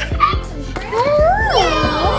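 Children's drawn-out, excited exclamation, a long 'wooow' that rises and then falls in pitch, over background music.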